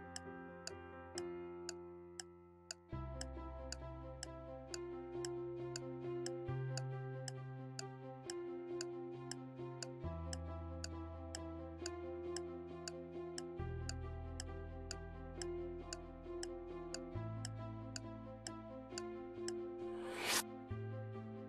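Quiz countdown clock ticking steadily, about two ticks a second, over a suspenseful background music bed; a low bass line comes in about three seconds in and shifts pitch every few seconds.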